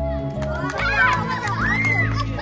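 Background music playing steadily, joined about half a second in by a group of children's excited voices and clapping.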